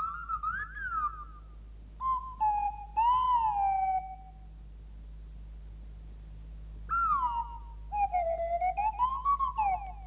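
Slide-whistle 'voice' of a Clanger: three phrases of gliding whistled notes that rise and fall like speech, the second and third about two and seven seconds in, with a quiet gap between them.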